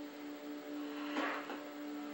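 A steady low hum holding one pitch, with a soft rush of noise a little past a second in.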